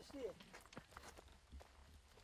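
Faint footsteps on a dry dirt path as a wheelbarrow is pushed along, with a few light clicks. A short wavering squeak dies away right at the start.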